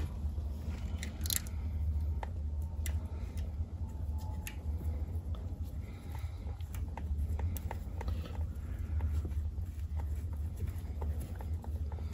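Scattered small clicks and rubbing as hands fit and press parts onto the base of a car's gear shift lever, over a steady low hum.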